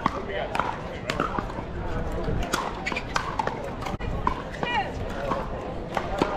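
Pickleball paddles hitting a plastic ball: a string of irregular sharp pops over background voices.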